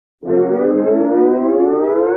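A loud siren-like wail, cut in abruptly out of total silence as an edited-in sound effect, rising slowly and steadily in pitch.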